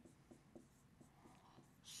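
Faint taps and strokes of a pen writing a word on a board, heard as a few scattered light ticks.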